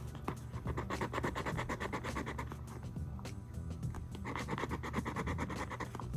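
A lottery scratch-off ticket being scratched with a small scratcher: rapid back-and-forth scraping strokes in two spells, the first stopping about halfway through and the second starting again a second or so later.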